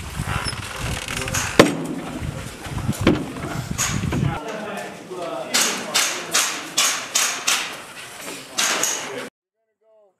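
Carbine fire in a room-clearing drill: a quick string of about eight sharp shots, roughly three a second, in the second half. Two heavy knocks come earlier, and voices run throughout.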